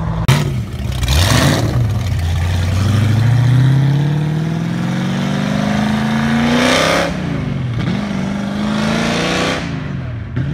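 Classic American muscle cars accelerating hard away, the engine note climbing steadily in pitch for several seconds, then dropping about seven seconds in and climbing again.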